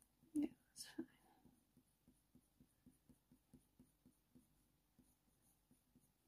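Faint, quick strokes of a Polychromos colour pencil on hot-press watercolour paper: light scratches about four times a second as the pencil lays colour down in small marks. There are a couple of soft breathy sounds in the first second.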